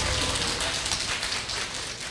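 Audience applauding, the clapping slowly fading.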